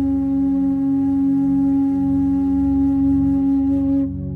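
Meditation music: a bansuri flute holds one long steady note over a soft sustained drone. The note stops at the very end, leaving the drone.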